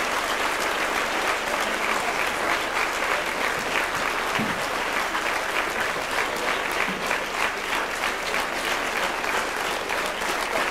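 Audience applauding: dense, steady clapping from a hall full of people.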